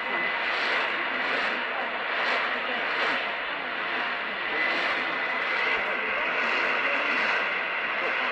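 Weak medium-wave AM broadcast on 1422 kHz played through a Sangean ATS-606 portable radio's speaker: steady static and hiss, with faint speech buried in the noise and a faint steady high whistle. The heavy noise is the sign of a weak, distant signal picked up on an indoor loop antenna.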